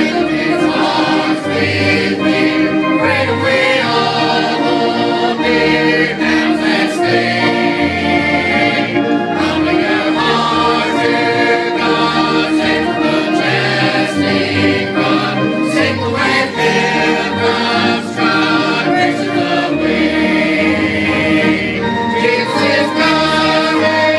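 Church choir of men's and women's voices singing a gospel hymn together, steady and continuous.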